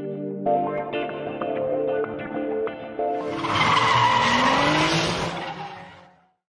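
Background music, then about three seconds in a loud car tyre screech with a rising tone under it, fading away near the end.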